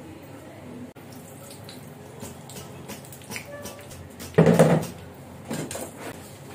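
Battered fritters frying in a pan of hot oil with a steady sizzle, and a metal skimmer clanking against the pan as pieces are lifted out: a loud clatter about four and a half seconds in and a smaller one near the end.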